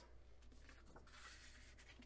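Faint paper rustle of a recipe card being slid into a taped paper pocket, strongest about a second in, over a low steady hum.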